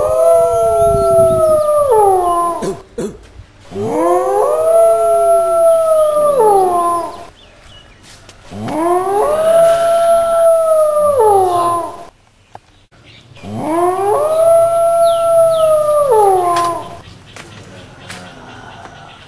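Four long wolf-like howls, each about three seconds, rising at the start, holding steady, then falling away. They are separated by short pauses and are nearly identical in shape.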